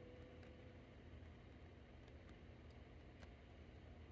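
Near silence: room tone, with a few faint clicks of steel pliers against copper wire as the wire is squeezed down.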